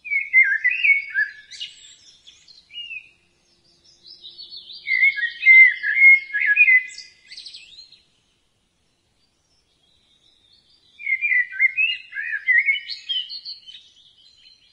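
A songbird singing three phrases of rapid, warbling chirps, with silent gaps between them.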